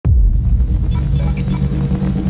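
Opening of an electronic intro music track: a deep bass rumble that starts abruptly, with faint higher tones joining about a second in.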